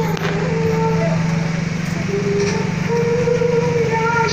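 A vehicle engine running steadily, with a melody of long held notes over it.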